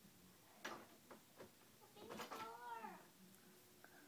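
Near silence with a few faint clicks. About two seconds in there is a short, faint voice-like sound that rises and then falls in pitch.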